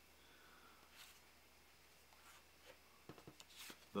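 Near silence: faint room tone, with a few soft clicks and light rubbing of cardboard game cards being handled on a wooden table, mostly in the last second.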